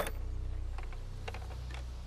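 A single sharp snap as a torsion-powered ballista is released to shoot its bolt, followed by a few faint ticks over a low steady hum.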